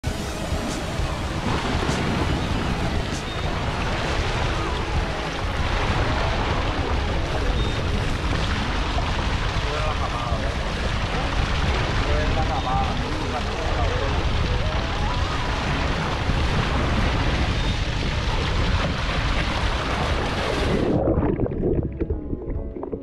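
Strong wind buffeting the microphone over the rush of open sea and a boat underway, with indistinct voices now and then. The noise cuts off abruptly near the end.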